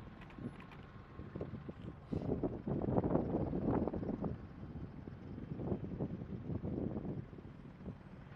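AH-64 Apache helicopter running on the ground with its rotor turning: a steady low drone. Wind buffets the microphone in irregular gusts, heaviest from about two to four and a half seconds in.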